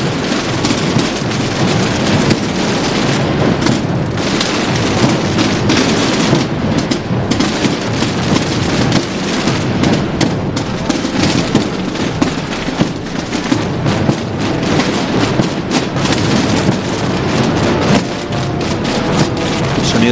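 Massed procession drums and bass drums (tambores and bombos) of a Holy Week drum corps playing together: a dense, unbroken stream of strokes with deep bass-drum booms underneath.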